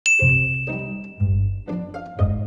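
A single bright ding at the very start that rings on and fades over about a second and a half, over background music of plucked low string notes about two a second.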